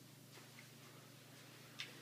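Near silence: quiet room tone with a steady low hum, a few faint ticks and one sharp click near the end.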